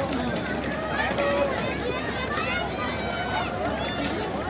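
Several high-pitched children's voices calling and chattering over one another, over a steady hubbub of background noise.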